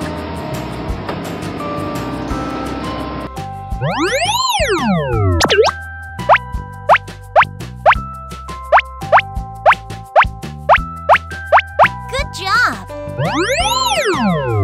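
Cartoon sound effects over children's music. A rough rolling noise comes first, as the animated road roller flattens the cobbles. Then a big rising-and-falling boing, a quick run of plops about two a second as railway sleepers pop into place, and another boing near the end.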